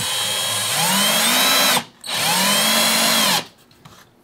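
Power drill driving a small screw through a bottle cap into a hardwood handle, in two runs of the trigger: a steady motor whine that stops just before two seconds in, a short pause, then a second run that ends about three and a half seconds in. The motor pitch climbs and then drops as each run ends.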